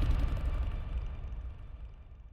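Deep rumbling boom of an outro sound effect, fading steadily away.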